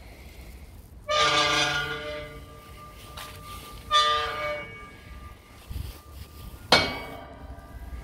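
A bell tolling three times, evenly about three seconds apart, each stroke ringing out and fading.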